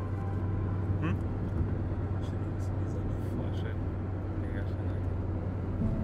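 Steady low drone of a car on the move, heard from inside the cabin, with faint voices in the background.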